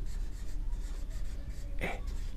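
A marker writing on a whiteboard: short scratchy strokes of the felt tip as words are written out, with one brief louder noise near the end.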